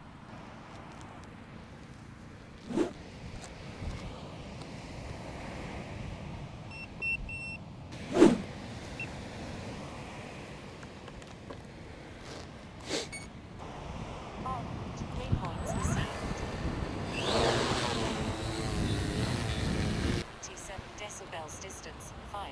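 Handling knocks and a short run of electronic beeps, then a quadcopter fishing drone's motors spinning up with a rising whine. The whine settles into a steady, layered hum for a few seconds, then stops abruptly.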